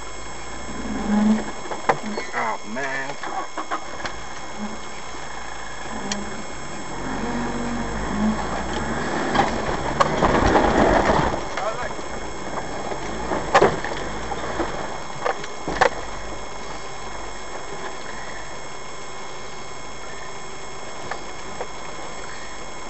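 Heard from inside the cab, a 4x4 crawls over rock at low engine speed, with scattered knocks and clicks from the body and wheels. About ten seconds in there is a louder stretch of a couple of seconds, as the engine works harder on the climb.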